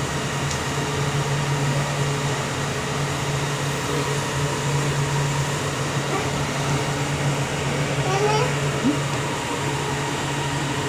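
Steady hum and rush of a metro train car's air conditioning and ventilation while the train stands at a station with its doors open.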